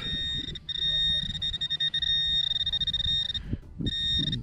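Hand-held metal-detector pinpointer sounding a continuous high-pitched tone as it is probed into loose soil, with short breaks about half a second in and near the end. The tone signals a metal target close to its tip.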